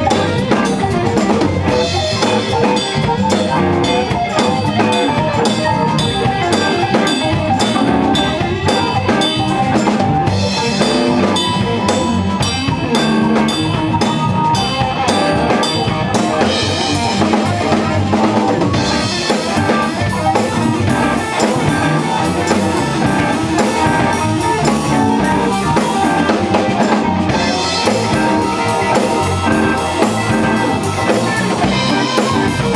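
Live band playing a song: drum kit to the fore, with electric bass, electric guitar and keyboard.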